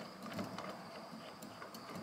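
Faint, irregular clicks and scrapes of a metal antenna whip being screwed by hand into its magnetic-mount base on a car roof.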